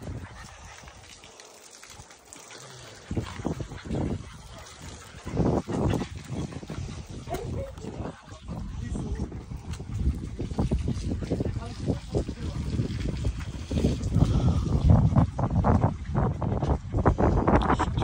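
English Pointer puppies lapping milk from a shared tray: irregular wet lapping and smacking sounds, with a low rumble on the microphone that grows louder in the last few seconds.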